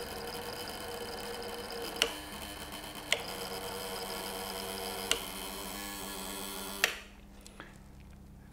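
Induction coil powering a cathode ray tube, running steadily with a hiss and a few sharp clicks, then switched off with a click about seven seconds in.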